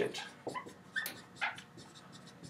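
Dry-erase marker writing on a whiteboard: a string of short squeaks and scratches as each letter is stroked, with a brief higher squeak about a second in.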